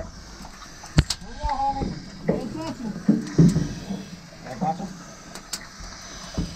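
Indistinct voices in short snatches, with a sharp click about a second in and fainter clicks later.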